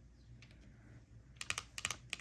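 Long fingernails clicking against tarot cards as hands reach across the spread: a quick run of sharp clicks in the last half second, after a faint start.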